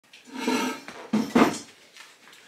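Metal parts clinking and clattering as they are handled at a clutch test bench, with two sharper knocks a little past the middle.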